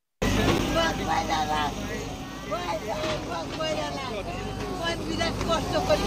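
Several people talking and calling out at once over the steady hum of a JCB backhoe loader's engine running.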